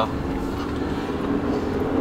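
Steady road and engine rumble heard from inside a moving car's cabin.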